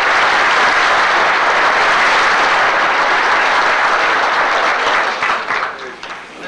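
Audience applauding a panelist's introduction, dying away near the end.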